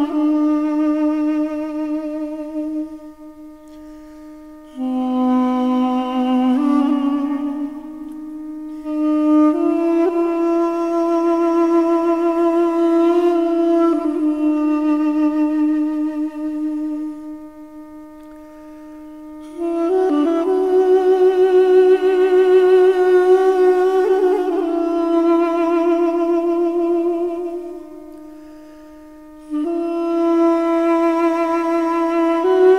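Armenian duduk music: a solo duduk plays a slow melody with vibrato in long phrases over a steady held drone. The melody drops out briefly between phrases three times while the drone carries on.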